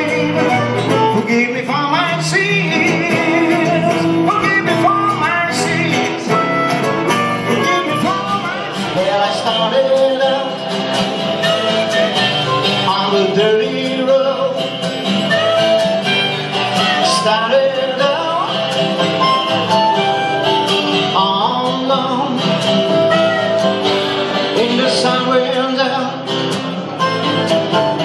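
Live acoustic blues instrumental break: two acoustic guitars, one of them a Takamine, strumming and picking a steady accompaniment while a harmonica plays a solo of long held and bent notes.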